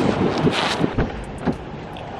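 Wind buffeting the microphone over breaking surf, with a couple of short knocks about a second and a second and a half in.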